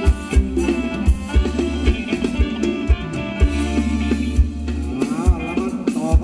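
Live band playing a Thai ramwong dance tune, with a steady drum beat under a bass line and melody.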